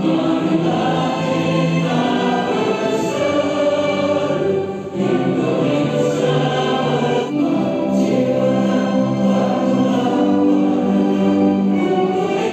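Many voices singing a slow song together in chorus, with musical accompaniment.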